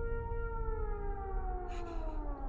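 A sauropod dinosaur's call, a film sound effect: one long pitched bellow that glides slowly downward, over a deep rumble.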